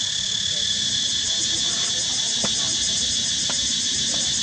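Steady, continuous chorus of insects buzzing at a high pitch, with two faint ticks in the second half.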